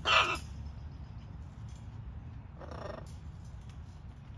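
Macaw giving a loud, harsh call lasting under half a second as the two birds beak at each other, followed by a second, quieter call about two and a half seconds in.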